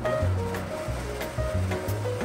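Background music with a bass line, over the steady noise of a Ninja countertop blender running a smoothie.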